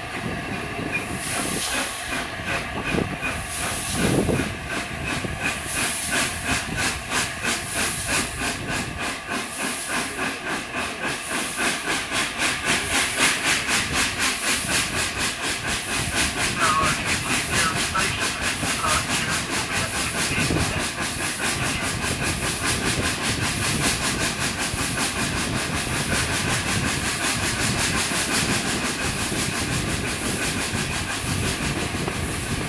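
LNER A4 Pacific 60009 'Union of South Africa', a three-cylinder steam locomotive, working along at speed, heard close up from its cab side: a rapid, even exhaust beat with steam hiss, quickening over the first dozen seconds and then holding steady. A low thump comes about four seconds in.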